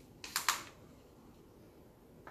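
Wooden stir stick scraping acrylic paint out of a small plastic cup: two short scrapes close together.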